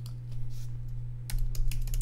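Typing on a computer keyboard: a few scattered keystrokes, then a quick run of clicks in the second half, over a steady low electrical hum.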